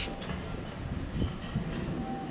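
Street ambience: a steady low rumble of distant traffic and wind, with a few light clicks such as footfalls or small knocks.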